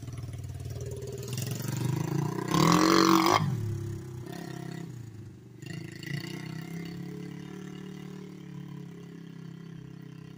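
Honda TRX90 four-stroke single-cylinder engine in a tiny minibike, revving as the bike is ridden. The engine swells to its loudest about three seconds in, its pitch sliding down afterwards, then runs steadier and quieter as the bike moves off.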